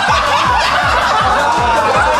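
A group of men laughing loudly and heartily together. Under it runs background music with a steady deep bass-drum beat of about three beats a second.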